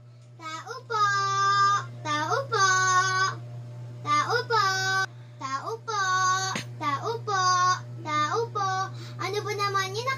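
A young child singing a string of long, held notes in a high voice, each about a second, with short slides into them. A steady low hum runs underneath.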